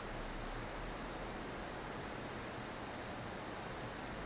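Steady, even hiss of room tone and microphone noise, with no distinct sounds.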